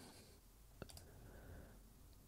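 Near silence with two faint computer mouse clicks, close together a little under a second in.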